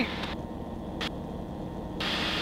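Steady drone of a Tecnam P92 Super Echo light-sport airplane's engine and propeller in cruise, heard through the cockpit headset intercom. The hiss above the drone cuts out shortly in, and there is a single brief click about a second in.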